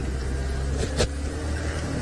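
Game-drive vehicle's engine running steadily at low revs, with one sharp click about halfway through.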